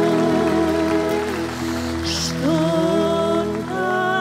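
Live band playing a traditional Serbian folk song, with women's voices singing long held notes with vibrato.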